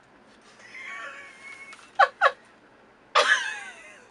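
Meow-like calls: a drawn-out wavering one, then two short sharp falling ones in quick succession about two seconds in, then a louder falling one near the end.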